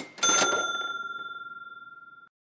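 A short noisy burst right at the start, then a single bell-like ding that rings on one clear high tone with fainter overtones and fades steadily away.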